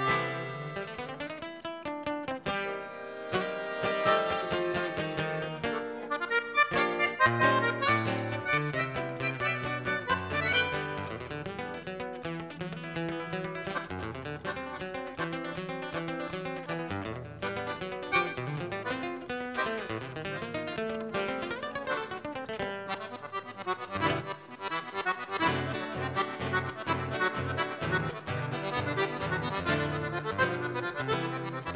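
Instrumental chamamé played by a duo: a button accordion carrying the melody over a fingered acoustic guitar accompaniment.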